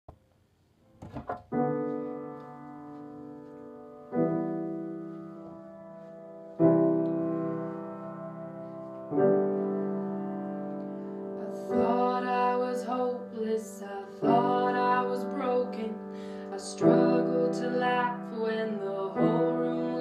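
Acoustic piano playing a song's introduction: four slow chords about two and a half seconds apart, each left to ring and fade, then a busier rhythmic accompaniment from about twelve seconds in. A few soft clicks come about a second in, before the first chord.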